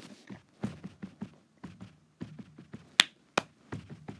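Scattered light clicks and taps at an irregular pace, with a sharper, louder click about three seconds in and another just after it.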